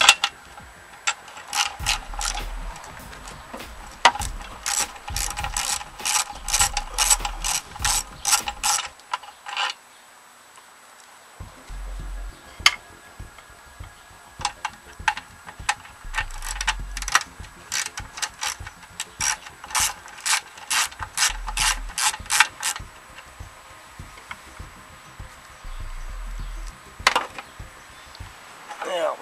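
A 3/8-inch socket ratchet clicking in two long, fast runs with a short pause between them, then once more near the end, as it backs out the bolts holding the gas tank to a Briggs & Stratton lawn mower engine.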